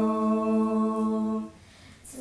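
Unaccompanied Georgian polyphonic folk hymn singing, the voices holding one long steady note that stops about a second and a half in, leaving a brief breath pause near the end.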